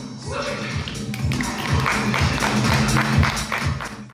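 Live music with a drum keeping a steady beat, about two beats a second. The sound fades out at the very end.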